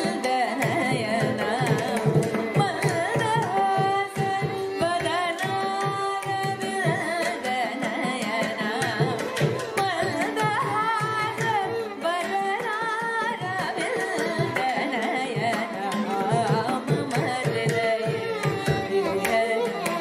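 Carnatic vocal performance: a woman singing an ornamented kriti line, shadowed by violin, with mridangam and ghatam playing a steady rhythmic accompaniment in Kanda Triputa tala.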